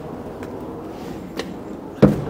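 Steady low outdoor city rumble, with two light knocks about a second apart.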